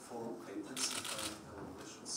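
A rapid burst of camera shutter clicks from press photographers, a fast rattle about a second in, over a voice speaking in the background.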